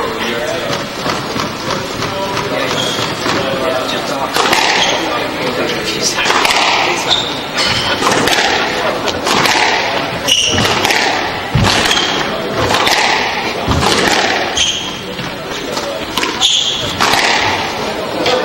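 Squash rally: from about four seconds in, the ball cracks off the racquets and the court walls roughly once a second, with short high squeaks of sneakers on the wooden floor between the shots, all echoing in the enclosed court.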